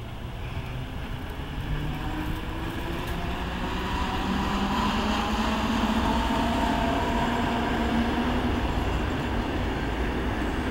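NS Plan V (Mat '64) electric multiple unit pulling away, its traction motor whine rising steadily in pitch over the rumble of wheels on track. The sound grows louder through the first half.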